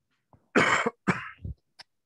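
A person coughing: two loud coughs about half a second and a second in, then a smaller one, followed by a brief click near the end.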